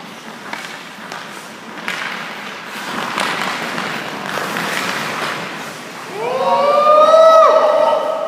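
Hockey skates scraping on the ice and a few sharp knocks of stick and puck as a skater carries the puck in on the goalie. About six seconds in comes the loudest sound, a drawn-out pitched tone that rises and is then held for about a second.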